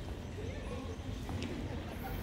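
Faint outdoor street ambience over a steady low rumble: distant voices and a few light clicks.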